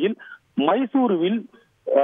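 Speech only: a man talking over a telephone line, the voice thin with nothing above the phone band, broken by two short pauses.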